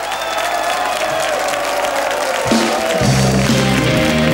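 Studio audience applauding while the live house band plays a celebratory tune, with bass and drums coming in louder about two and a half seconds in.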